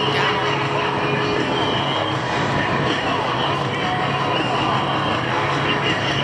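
USMC C-130 Hercules with four turboprop engines flying toward the listener, the engines droning steadily.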